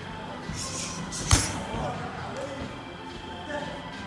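One sharp, loud smack of a strike landing on a Muay Thai pad a little over a second in, with a couple of softer hits around it, over steady background music.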